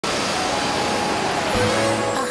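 Ocean surf: a steady rush of breaking waves. Music fades in under it near the end.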